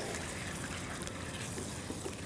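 A spatula stirring chicken pieces through a thin, freshly watered-down white gravy in a non-stick pan, a steady wet stirring noise.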